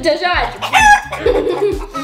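Chicken clucking and crowing, loudest in the first second, over background music with a steady low beat.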